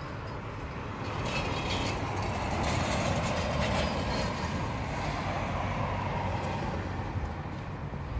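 Steady noise of a passing vehicle that swells and fades, with a low rumble underneath.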